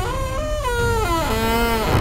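A door creaking as it is pushed slowly open: one long creak whose pitch slides steadily downward, wavering slightly.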